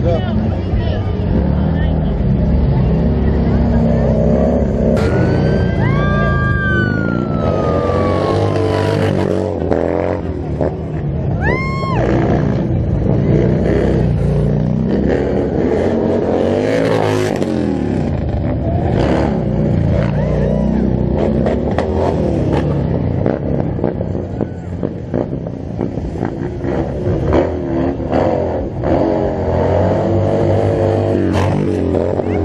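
Harley-Davidson motorcycle engines revving up and down over and over during stunt riding, with voices and crowd chatter underneath. A few short high squeals cut through about six and twelve seconds in.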